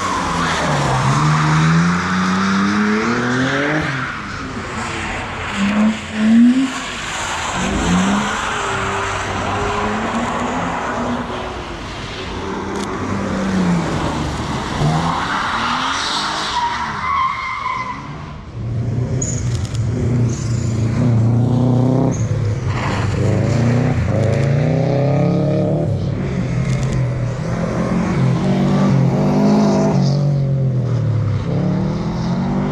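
A car's engine repeatedly revving up and dropping back while its tyres skid on wet asphalt, as it is driven hard through a slippery cone course.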